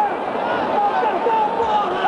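A man's voice talking over the steady noise of a stadium crowd.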